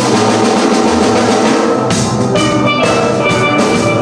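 Steel pan ensemble playing a tune, many pans struck together, with a drum kit keeping a steady beat underneath.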